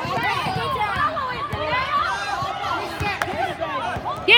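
Several voices shouting and calling over one another from spectators and players at a youth basketball game, with a couple of sharp knocks from a basketball bouncing on the hardwood court.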